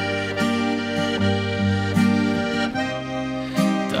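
Bayan (chromatic button accordion) playing sustained chords with an acoustic guitar, the chords changing about every second.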